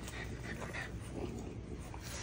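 Faint sounds from French bulldogs close by, quiet and without a clear pattern.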